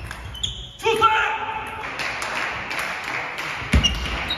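Table tennis ball clicks off bats and table with a short ringing ping as the rally ends. About a second in comes a loud shout from a player, then clapping and cheering from spectators in the hall.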